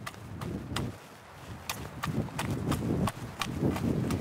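Metal garden rake chopping repeatedly into loose garden soil, breaking up dirt clods: a steady rhythm of dull thuds with sharp clicks, about three to four strikes a second, growing louder about halfway through.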